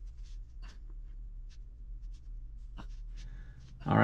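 Faint, scattered scrapes and light knocks of hands handling a clay sculpture and its wooden support, over a steady low electrical hum.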